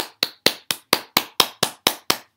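One person clapping hands in a steady, even rhythm, about four to five claps a second, close to the microphone.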